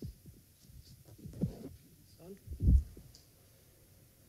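A few soft, low thumps over quiet room tone in an auditorium, the loudest about two and a half seconds in.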